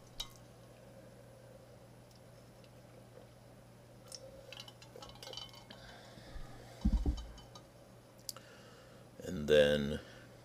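Quiet room with a steady low hum and a few faint clicks, a short low thump about seven seconds in, then a man's brief hummed 'hmm' near the end.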